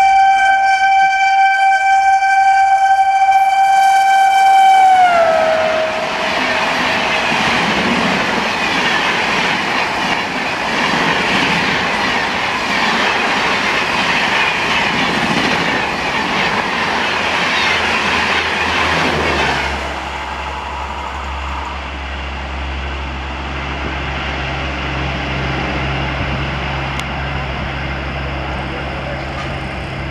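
WAP7 electric locomotive's horn sounding as the express passes at about 130 km/h, its pitch dropping about five seconds in as the locomotive goes by. Then the loud rushing noise of the coaches passing at speed for about fifteen seconds, which cuts off suddenly, leaving a steady low hum.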